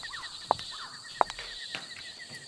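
Night ambience: a steady, rapid chirring trill of crickets, with two short, sharp squeaks sliding down in pitch, the loudest sounds, about half a second and just over a second in.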